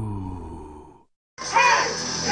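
A low, drawn-out groan-like vocal sound, falling slowly in pitch and fading out about a second in. After a brief silence, music and voices in a karaoke room start.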